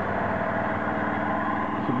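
A small engine running steadily at a constant speed, an even hum with no change in pitch.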